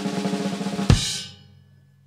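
Drum kit snare roll that ends about a second in on one loud final hit with bass drum and cymbal, the cymbal ringing on and fading away.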